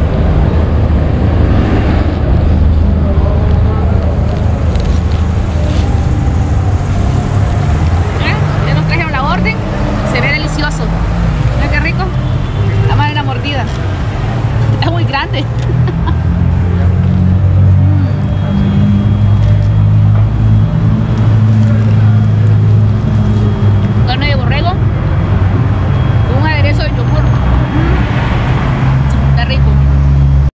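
A motor vehicle engine running steadily, its pitch slowly rising and falling, with street voices heard at times.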